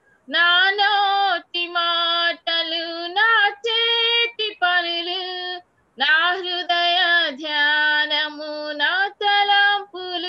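A woman singing a slow devotional song solo, without accompaniment: long held notes in short phrases with brief breaks for breath between them.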